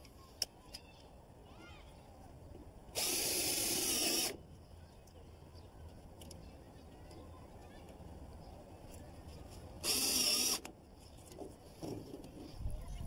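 Cordless drill driving screws into a metal chimney termination fitting, in two short runs: one about three seconds in, lasting just over a second, and a shorter one about ten seconds in.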